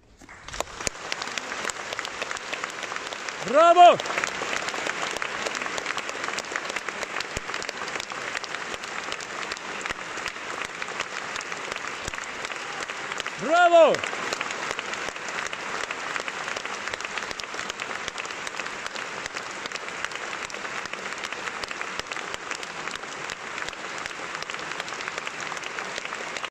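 Concert-hall audience applauding steadily for a singer after an operatic aria. A single loud shout from a voice in the audience rises and falls in pitch about four seconds in, and again about fourteen seconds in.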